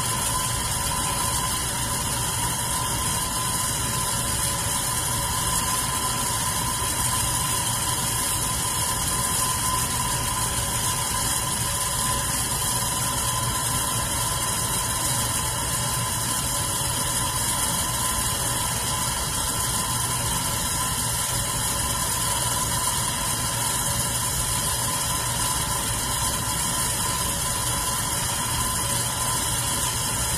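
Red electric fan running: a steady hum with a faint constant whine and the rush of moving air, unchanging throughout.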